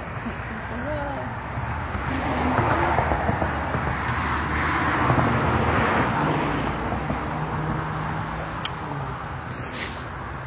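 A car passing on a nearby road: its tyre and engine noise swells over a few seconds, peaks in the middle and fades away.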